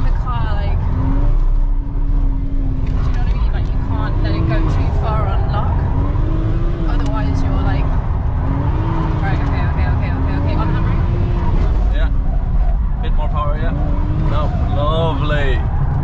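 BMW 335's engine heard from inside the cabin while it is driven on track, its revs rising and falling in smooth swells over a steady low road and tyre rumble.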